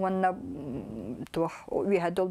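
A woman speaking, with a low, wavering, drawn-out vocal sound about a quarter to halfway in.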